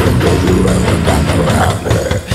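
Death-metal band music: a downtuned Schecter Omen electric guitar playing heavy metal riffs over a dense, steady drum track.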